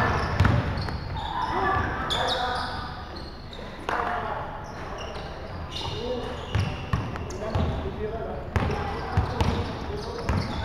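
Basketball bouncing on a wooden gym floor, with sneakers squeaking and players' indistinct shouts echoing in a large indoor sports hall.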